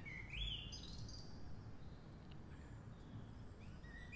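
Faint bird chirps over quiet room noise: a run of rising, bending chirps over about the first second, and a short one near the end. A soft low bump about half a second in.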